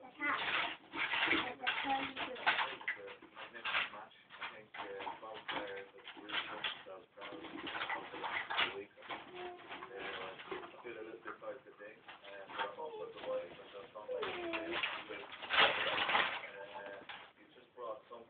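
Indistinct voices without clear words, coming and going throughout, louder around two, eight and fifteen seconds in.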